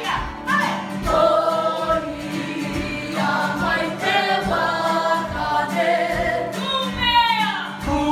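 A choir of girls singing a Māori waiata together, with a downward vocal glide about seven seconds in.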